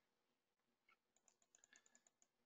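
Near silence, with a faint run of quick clicks from typing on a computer keyboard, about ten a second, starting about a second in.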